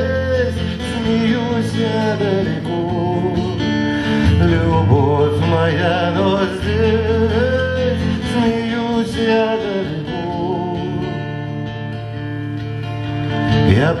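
Live acoustic band music: strummed acoustic guitar under a wavering melodic lead line, played as a passage without sung words.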